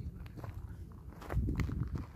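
Footsteps scuffing over dry, stony ground, with a few sharp clicks of grit and stone and a low rumble of movement over the second half.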